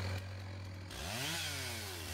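Chainsaw engine running low, then revved about a second in, its pitch rising and falling back down.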